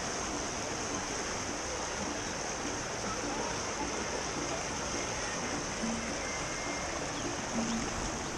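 Shallow river rapids rushing steadily over rocks, with faint background music.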